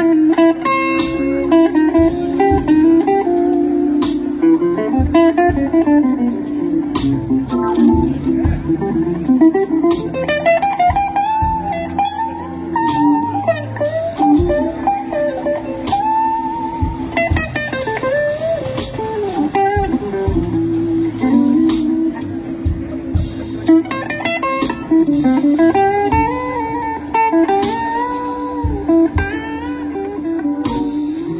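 Live slow blues band playing an instrumental break: a hollow-body electric guitar solos in bending, sung-like lines over held Hammond organ chords, with electric bass and drums.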